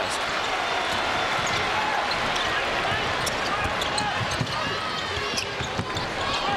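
Basketball being dribbled on a hardwood court over the steady din of an arena crowd, with short sneaker squeaks from about halfway through.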